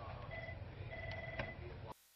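An electronic telephone ringing: a short ring tone, then a longer one. The sound cuts out abruptly just before the end.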